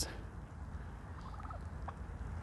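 Domestic turkeys in a pen, one giving a short, faint call, a quick run of notes about a second in, over a low steady rumble.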